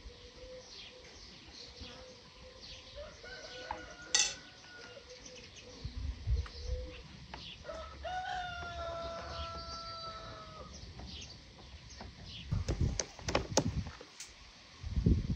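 A rooster crowing, its longest call held steady for about two and a half seconds from about eight seconds in, over small birds chirping. A few low thumps come near the end.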